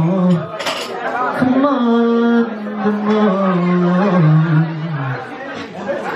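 Male R&B singer's amplified voice singing long, drawn-out notes into a handheld microphone; one held note starting about a second and a half in steps down in pitch twice before ending about five seconds in.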